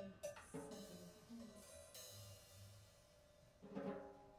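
Faint, sparse free-improvised playing: light cymbal washes and soft taps on a drum kit, with a short low pitched tone in the first two seconds and a slightly louder stroke near the end.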